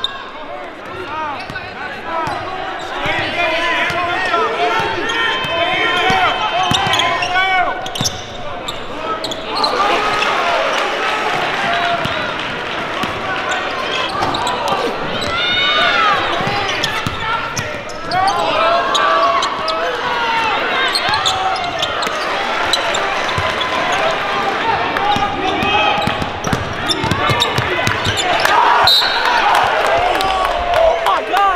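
Live basketball game sound in a gym: a ball dribbling and bouncing on the hardwood, many short high squeals from sneakers on the court, and players and spectators shouting.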